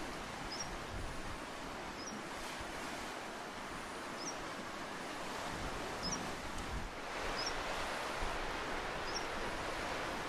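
Sea surf washing into a narrow rocky cove as a steady wash that swells louder about seven seconds in. A short high chirp repeats about every one and a half seconds.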